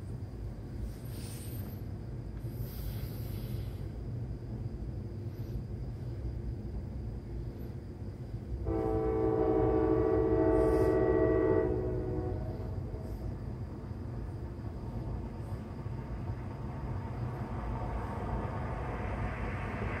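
A CSX freight locomotive's air horn sounds one long blast of about three seconds, about halfway through, over a steady low rumble from the approaching train. The rumble grows louder near the end.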